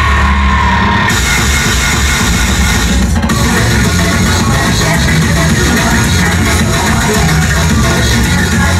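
Loud electronic dance music from a DJ set, played over a club sound system, with heavy bass. The treble drops out briefly about three seconds in.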